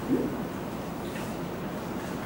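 Steady room hiss of a small classroom, with one brief low voice sound, a short hum-like note, just at the start.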